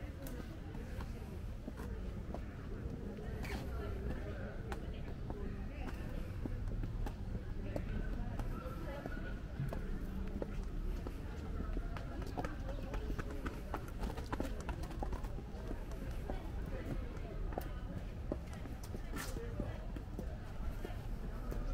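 Footsteps on a paved path, short hard steps, with people's voices talking quietly nearby over a low steady rumble.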